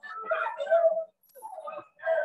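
Voices from a protest crowd in a video played back over a video call. They come in short, choppy bursts broken by sudden silences.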